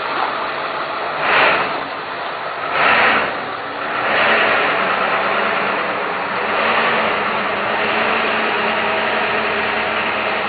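A vehicle engine running steadily at low speed, with two brief louder rushes of noise about one and a half and three seconds in, and a fuller, slightly louder sound from about four seconds on.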